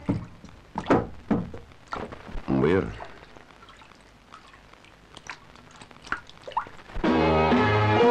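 A few short spoken words and small knocks, then a quieter stretch. Film score music comes in about seven seconds in.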